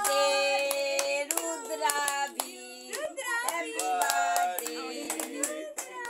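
Several people clapping their hands in a quick rhythm along with singing, voices holding drawn-out notes.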